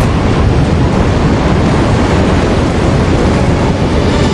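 Loud, steady roar of wind and churning water, with no separate crashes or impacts standing out.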